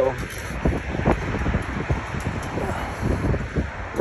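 Steady traffic noise from a busy multi-lane highway, with wind buffeting the phone's microphone.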